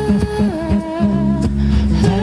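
Live pop-rock band playing between sung verses: strummed acoustic guitar, electric guitar and drums under a held, wordless melodic line that wavers slightly in pitch and steps up about half a second in.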